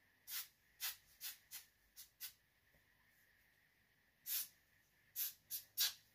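Small scissors snipping the lace of a lace-front wig along the hairline. There are about ten short, crisp snips: a quick run of six, a pause of about two seconds, then four more.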